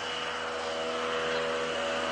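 Soft sustained chord of held tones, as in ambient background music, with some notes entering and fading out part-way through.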